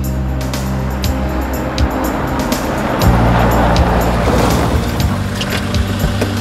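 A car arriving on a gravel lot: engine running and tyres crunching over gravel, the crunching growing louder about three seconds in. A low, sustained music score plays underneath.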